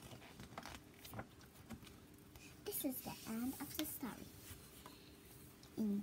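Soft rustles and light taps of a paperback picture book being handled and turned over, with a child's quiet murmur or whisper about halfway through.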